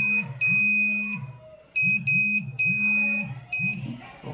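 Piezo buzzer on an Arduino smart shoe beeping a steady high tone in a string of bursts of uneven length, with a short gap near the middle. Each beep is joined by the low hum of the shoe's vibration motor starting up. The ultrasonic sensor is detecting an obstacle within about 50 cm.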